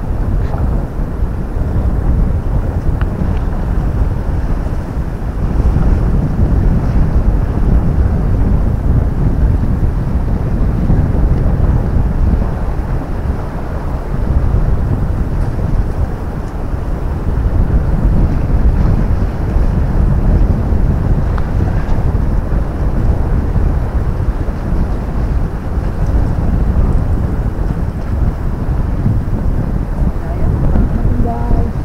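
Wind buffeting the camera microphone: a loud, low rumble that swells and eases unevenly throughout.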